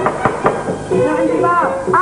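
Knocking on a wooden door by hand: a few quick raps in the first half second, then a voice from about a second in.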